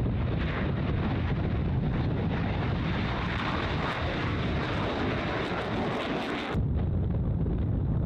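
F-15 fighter jet taking off, its twin jet engines at full power as it rolls and climbs away. About six and a half seconds in the sound cuts off suddenly to a low rumble with wind on the microphone.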